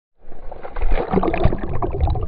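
Muffled water noise picked up by a camera underwater: irregular sloshing and bubbling crackles over a low rumble, dull and lacking any treble.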